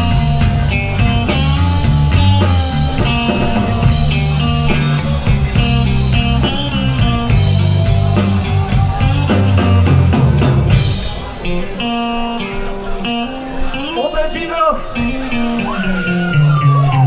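Live blues-rock trio playing an instrumental passage: electric guitar over bass guitar and drum kit. About eleven seconds in, the bass and drums drop away and the guitar carries on more quietly with bent, gliding notes.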